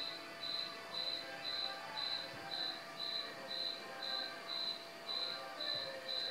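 A cricket chirping steadily outdoors at night, about two even chirps a second, with faint music underneath.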